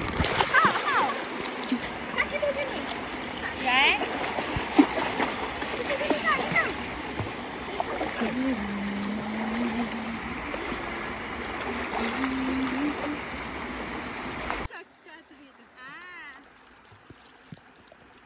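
Splashing and sloshing of people moving in a shallow river over a steady rush of running water, with short voices and exclamations mixed in. About fifteen seconds in the water noise drops away suddenly, leaving it much quieter.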